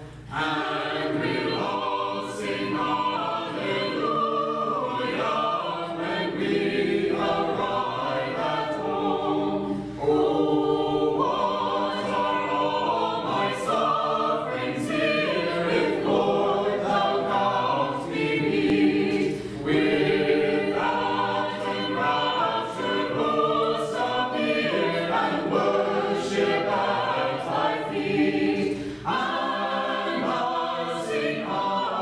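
Small mixed choir of men and women singing Orthodox liturgical music a cappella in several voice parts, in phrases with brief breaks between them.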